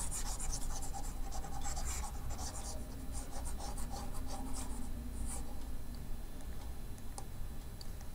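Stylus tip rubbing and scratching on a tablet screen in quick, repeated strokes as handwriting is erased, thinning out after about five seconds, over a low steady hum.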